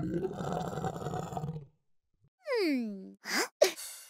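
Cartoon dinosaur roar sound effect lasting about a second and a half. After a short gap comes a quick sliding-down whistle-like sound effect, then two or three short sharp sounds near the end.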